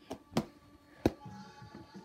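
A football thrown at an over-the-door mini basketball hoop knocks against the backboard and door in a missed shot. There are two light taps, then a sharp knock about a second in, over faint background music.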